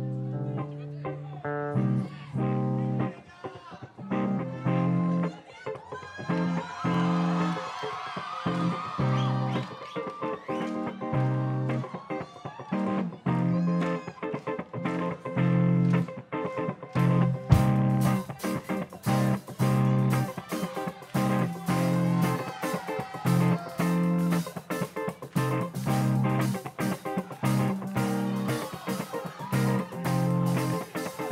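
Live band playing with bass guitar and electric guitar over a steady beat. A bit over halfway through, the drums and cymbals come in fully and the band plays at full strength.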